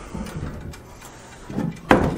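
Aluminum scissor-type camper steps being lifted and folded by hand: faint handling and sliding noise of the hinged frame, then one sharp clank near the end.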